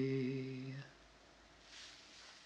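A man's unaccompanied voice holds the last note of a sean-nós song at a steady pitch and fades out just under a second in. A faint soft hiss follows near the end.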